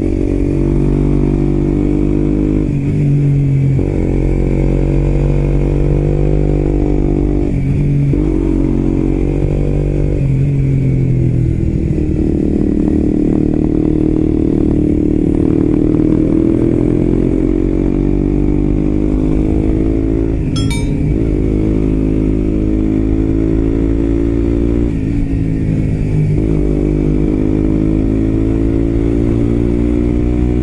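Suzuki GSX-R125's single-cylinder engine through an aftermarket muffler, heard from on board while riding. The engine pitch rises and drops repeatedly as the bike is shifted and throttled, with one sharp click about two-thirds of the way in.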